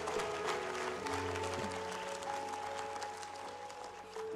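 Congregation applauding over soft held music chords, the clapping fading toward the end.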